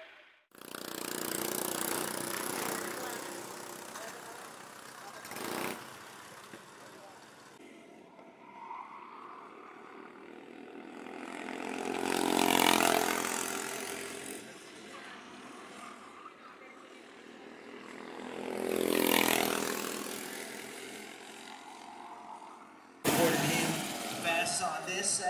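Two-stroke racing kart engines on the circuit, passing close by twice, each pass rising to a peak and fading away, with a steadier engine drone between and a brief sharp sound before the first pass.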